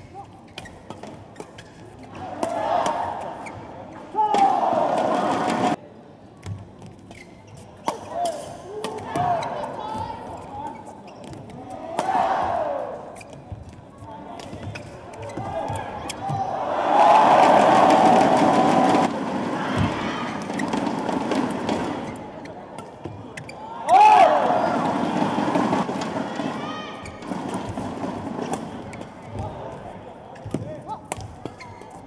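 Badminton rallies: sharp racket strikes on the shuttlecock at irregular intervals. Between points a crowd cheers and shouts, in bursts of a few seconds, loudest around the middle and again a little later.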